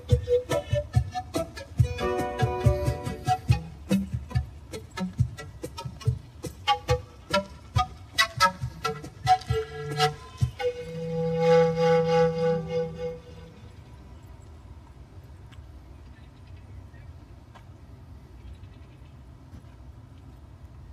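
Live folk music on pan flute, strummed acoustic guitar and hand percussion, with sharp drum strikes under the melody. The tune ends on a long held note about three-quarters of the way through the first half. After that only faint, steady outdoor background remains.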